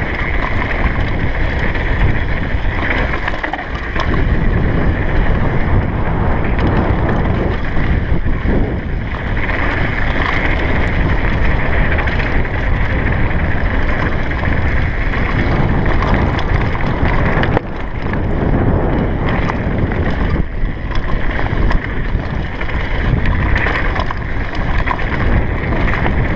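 Wind rushing over a GoPro Hero3's microphone on a fast downhill mountain-bike descent, mixed with the tyres crunching over loose gravel and stones and the Commencal Supreme downhill bike rattling. It is loud and steady throughout, with small dips and knocks as the trail changes.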